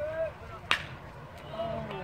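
A baseball bat striking a pitched ball, one sharp crack a little under a second in: the batter hits a single.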